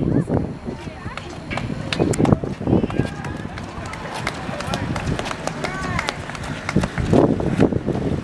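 Indistinct talk from several people, with scattered sharp taps throughout.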